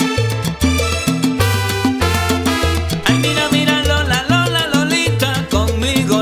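Salsa band playing an instrumental passage: a repeating bass line and steady percussion strikes, with a wavering, bending lead melody coming in about halfway through.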